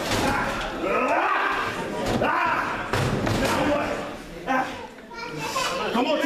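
Several thuds of wrestlers' bodies hitting the ring mat, among raised voices from the wrestlers and the crowd.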